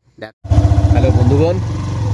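A vehicle engine running with a steady low rumble, starting about half a second in after a brief gap, with a person's voice over it.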